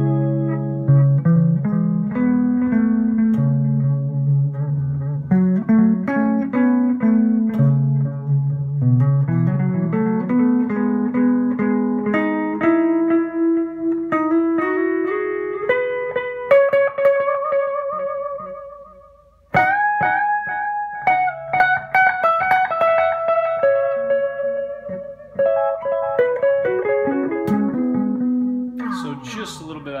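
PRS SE Custom electric guitar played through a Line 6 M5 on its digital delay with modulation preset and a Carvin Legacy 3 amp: picked melodic lines with delay repeats and chorus shimmer, moving from lower notes to higher ones. Past the middle a held note rings out and fades almost away, then the playing starts again suddenly.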